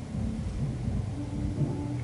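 Low, steady background rumble with a faint hum in it.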